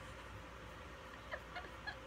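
Laughter that is nearly silent, breaking into two short, high, squeaky catches of laughter in the second half.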